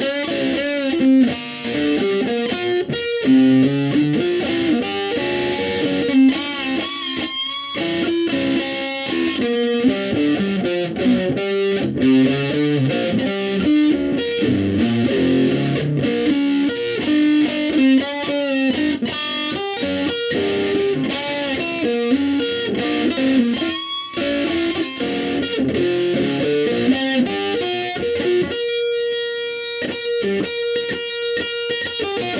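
Electric guitar played through an amplifier in a loose improvised jam: a busy run of single notes and chords, some notes bent and wavering in pitch, ending on a note left ringing near the end.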